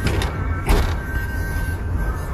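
Low rumble of a car's engine and road noise heard inside the cabin, with a single thump a little under a second in.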